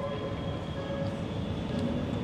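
Steady low rumble of room noise in a lecture hall, with a few faint thin tones over it and no speech.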